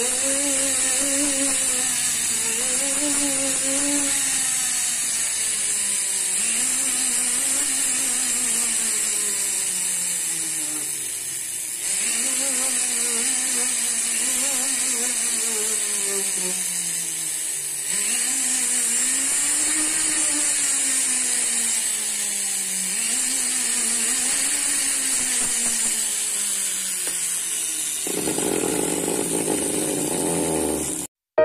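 A jeweller's handheld rotary tool with an abrasive rubber bit grinding and smoothing the facets of a 16k gold ring. Its motor whine repeatedly rises and then slides down in pitch every two to three seconds as the speed changes under load, and near the end it gives way to a coarser hiss.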